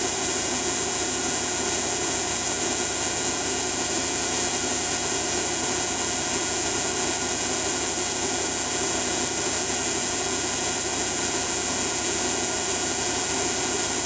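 Steady running noise of an alternator-driven Tesla coil rig: a constant hiss with a hum of several steady tones beneath it, unchanging throughout.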